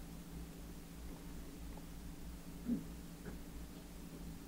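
Quiet room tone with a steady low hum, and one brief faint sound about two and a half seconds in.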